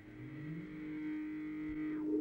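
A held tone, steady in pitch, from the cartoon's soundtrack, likely a sustained note from the score. A lower note slides up beneath it at the start, and it swells slightly.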